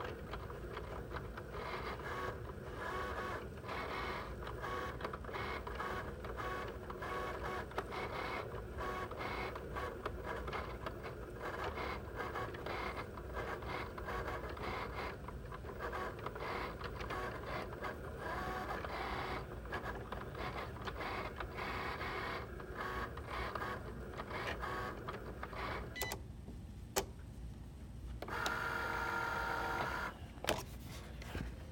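Cricut cutting machine's motors whirring in quick stop-start moves as the blade carriage traces a cut over cardstock on the mat, a cut the owner says the machine is not making. Near the end it goes quieter with a couple of clicks, then a steadier whine as the mat is rolled out.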